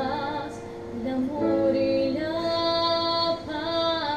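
A woman singing live with violin accompaniment, a slow song with notes held long and wavering, including one long sustained note in the middle. The loudness dips briefly about a second in.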